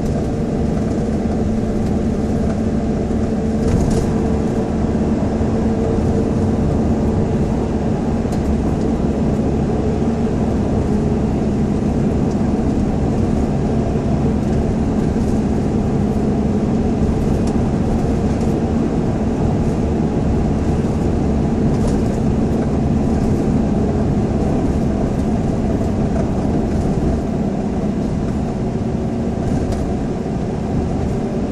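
Steady road noise inside a moving car's cabin: the engine and tyres make a constant drone with a low steady hum underneath.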